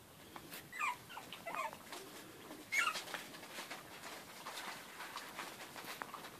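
Puppies at play giving short, high-pitched squeaky cries that waver in pitch: three of them, the loudest about halfway through, with light clicks between.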